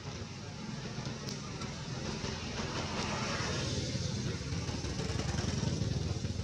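A low engine rumble, like a motor vehicle, growing steadily louder.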